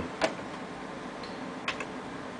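Computer keyboard keys clicking as a password is typed: one click shortly after the start, then two quick clicks near the end, over a faint steady room hum.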